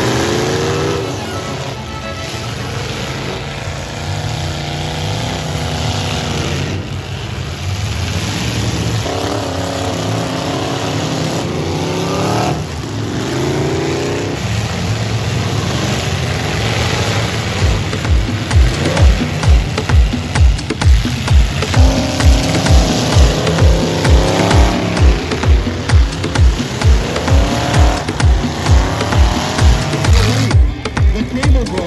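Demolition derby cars' engines revving hard, their pitch sweeping up and down again and again amid noisy arena din. Music with a steady thumping beat of about two beats a second comes in just past the middle.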